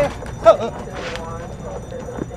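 A person's short, high yelp about half a second in, with quieter vocal sounds after it.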